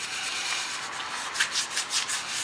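Hand wet-sanding with 320-grit sandpaper pressed under the thumb: quick, short back-and-forth rubbing strokes on the car's painted door jamb, feathering out a paint edge. A few stronger strokes come about one and a half seconds in.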